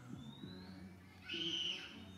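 A single high-pitched animal call lasting about half a second, starting past the middle, over steady background music.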